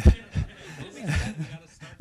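A man chuckling into a handheld microphone in several short, irregular bursts of laughter.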